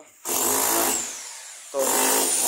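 A power tool running in a loud burst that starts a quarter of a second in and dies down after about a second, then starts again near the end.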